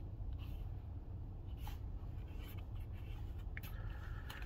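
Faint, intermittent scratching on a scratch-off lottery ticket as its coating is rubbed off in short strokes, over a low steady rumble.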